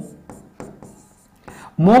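A pen writing on an interactive display screen: a few faint taps and scratches of the pen tip as a short word is written.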